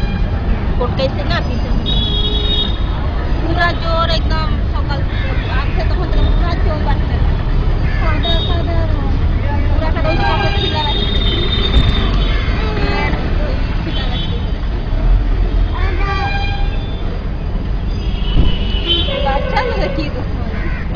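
Street traffic rumbling steadily, with vehicle horns tooting several times, and people's voices talking in the background.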